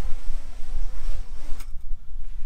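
FPV quadcopter's motors and propellers buzzing as the drone hovers and descends under GPS return-to-home. The buzz drops away about one and a half seconds in, over a steady low rumble.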